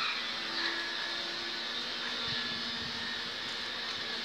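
Steady background noise with a faint low hum, and no distinct events.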